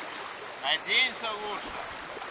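A shallow river flowing, a steady rushing hiss, with a voice speaking briefly about a second in.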